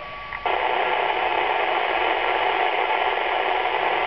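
Yaesu FT-212RH 2-metre FM receiver putting out steady hiss with its squelch open: the space station has stopped transmitting after its "over", so no signal is coming in between answers. The hiss cuts in sharply about half a second in, after a brief quieter moment.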